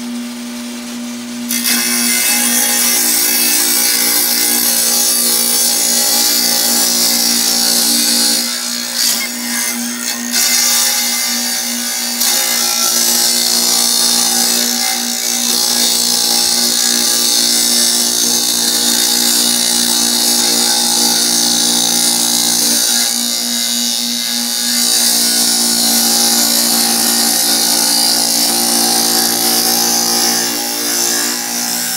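Kobalt wet tile saw cutting a firebrick: the motor's steady hum, joined about a second and a half in by the loud, hissing sound of the diamond blade biting into the brick, which eases off briefly around a third of the way through before carrying on.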